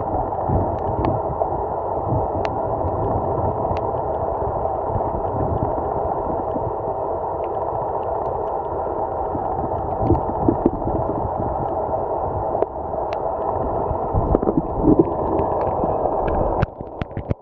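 Underwater ambience heard through a camera's waterproof housing: a steady, muffled rush and gurgle of moving water with a low rumble, swelling louder a couple of times, and faint sharp clicks now and then.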